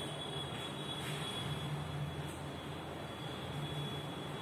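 Steady low hum and hiss of room background noise, with a faint, thin high-pitched whine held throughout.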